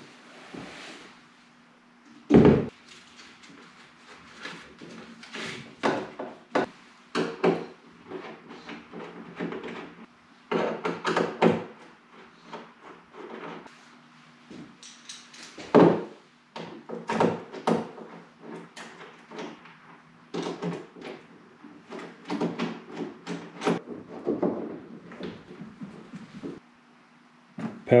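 Clunks, knocks and clicks of a 12-volt lithium battery being set into an Old Town Predator 13 fishing kayak and hooked up by hand. There is one heavy thump about two and a half seconds in, and a faint steady hum underneath.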